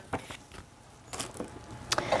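Faint handling sounds of a paper notebook: a few light taps and rustles as its pages are flipped and it is put down.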